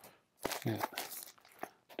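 Vinyl LP jackets rustling and sliding against each other as records are pulled from a tightly packed shelf, with a few short sharp clicks.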